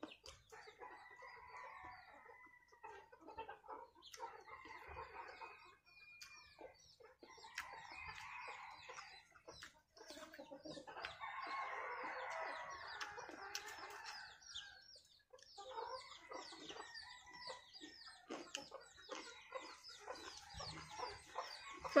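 Free-ranging chickens clucking faintly and calling on and off, with a longer, louder rooster crow about eleven seconds in.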